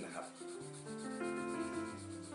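Graphite pencil rubbing back and forth on drawing paper, shading a solid dark patch, over soft background music.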